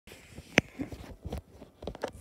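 A sharp click about half a second in, followed by several soft knocks and taps.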